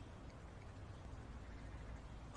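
Quiet room tone with no distinct sound: only a faint, even background hiss and low hum.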